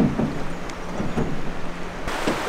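Steady rushing wash of fast river current.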